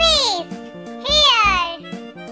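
Children's background music with a steady beat and held tones, with two high-pitched sliding calls over it, one at the start and another about a second in.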